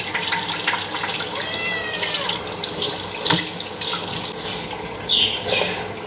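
Bathroom tap running into a sink while lathered face wash is rinsed off, with splashing, a short gliding squeak about one and a half seconds in and a sharp click a little after three seconds; the water eases off near the end.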